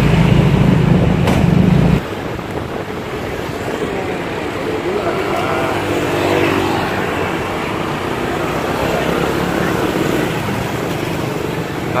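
Engine and road noise from riding along a city street in traffic. A loud low rumble cuts off abruptly about two seconds in, after which a steadier, quieter road noise continues with faint voices partway through.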